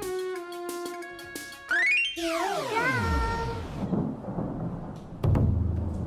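Video-game-style electronic music: a run of short beeping notes, then a quick rising glide and a long falling sweep. About five seconds in there is a deep booming hit, the loudest sound here.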